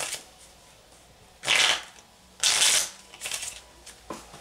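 A deck of tarot cards being shuffled by hand: two short bursts of shuffling about a second apart, then a few lighter card taps near the end.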